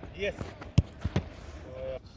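Football thuds during a shot-stopping drill: one loud sharp thud just before a second in, then two softer thuds shortly after as the goalkeeper dives and the ball and keeper hit the artificial turf.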